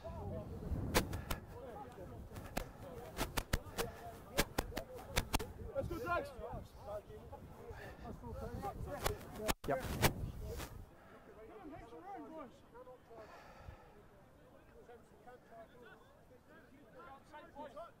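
Rumble and many sharp clicks on the microphone for the first ten seconds or so, typical of wind or movement on a worn mic, then quieter. Faint distant voices of players run underneath.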